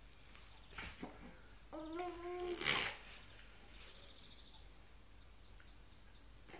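Three-month-old baby making his new breathy "pfff" sound, blowing air through his lips. A short puff comes about a second in; a brief coo follows, then a loud "pfff" about three seconds in.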